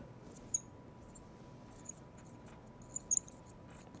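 Marker squeaking on a glass lightboard as words are written, in short high chirps: a few at first, then many in quick succession in the second half.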